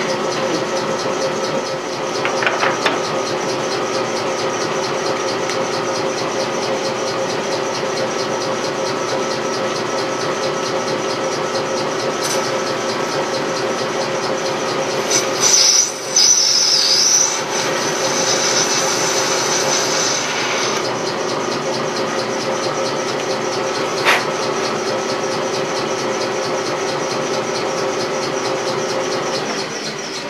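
Metal lathe running steadily with a constant hum and whine while taking a light facing cut on a brass part; the cut brings a louder, higher-pitched scraping passage about halfway through. The lathe begins to run down at the very end.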